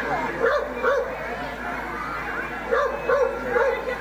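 A dog barking several times in short yips over crowd chatter.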